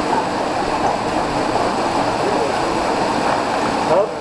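Waterfall pouring into a rock-walled plunge pool: a steady, even rush of falling water.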